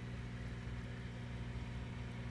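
Steady low hum of aquarium equipment running, with a faint even hiss.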